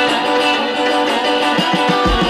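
Electric guitar playing a delta blues part on a studio recording. A steady low bass-and-drum beat comes in near the end.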